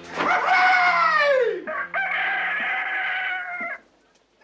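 A rooster crowing twice. The first crow falls away in pitch at its end, and the second, more level crow stops abruptly near the end.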